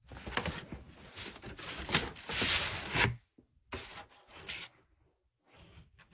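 Scarf fabric rustling and rubbing close to the microphone as it is handled: a dense rustle for about three seconds, then a few shorter rustles.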